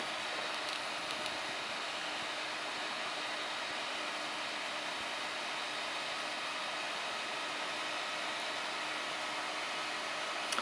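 Steady hiss of background room noise with a faint low hum, unchanging throughout, and a couple of faint clicks about a second in.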